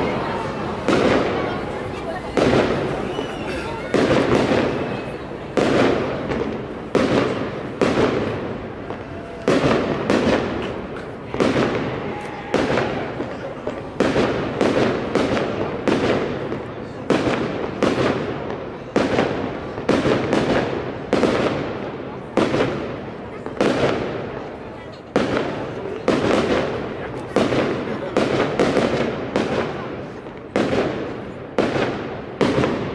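Fireworks display: aerial shells bursting overhead one after another, a sharp bang roughly every second, each trailing off over about a second.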